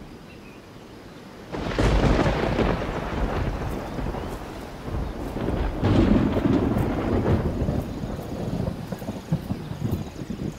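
Thunder: a rumbling roll breaks out suddenly about one and a half seconds in, swells again around six seconds, and rumbles on unbroken.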